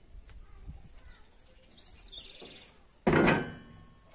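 Faint bird chirps, then about three seconds in a single loud clank as the metal protective grille is knocked against the trailer's plywood panel and frame, with a brief metallic ring after it.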